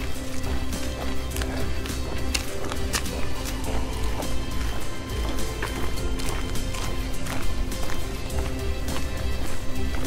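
Background music with held notes over a steady low bass.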